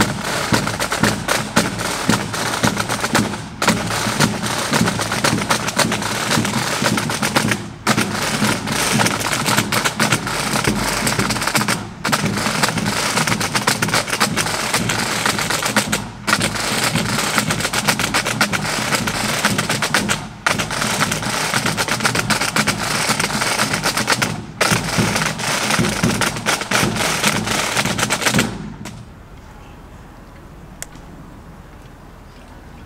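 A pipe band's drum corps playing a rapid marching beat on snare drums, with a short break about every four seconds. The drumming stops abruptly shortly before the end.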